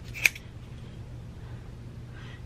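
Scissors snipping once through a box braid, a single sharp cut about a quarter-second in, over a low steady hum.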